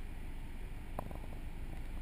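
Low steady rumble of a naturally aspirated car engine idling, heard from inside the cabin, with a faint click about a second in.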